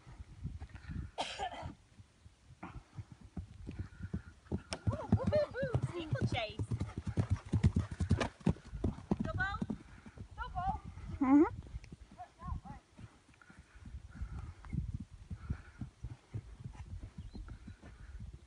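A pony's hooves thudding on grass as it canters, heard throughout. Voices call out over it between about four and twelve seconds in, ending with a loud call that drops sharply in pitch.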